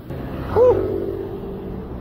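Road traffic noise heard from a moving bicycle, with one pitched tone that starts just after half a second in, bends briefly and then holds steady for about a second.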